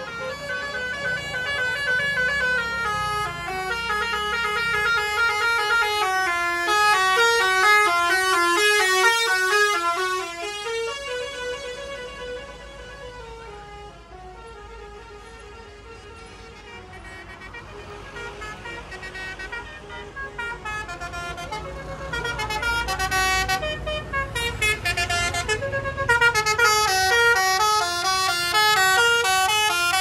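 Telolet horns on tour buses: multi-tone horns playing quick melodic runs of notes, loud for the first ten seconds and again over the last few seconds. In between the tunes fade and the low rumble of a bus passing close rises.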